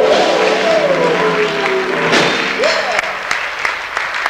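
The end of a live rock-and-roll song: a held, wavering final note that slides down and fades about two seconds in, with audience applause over it.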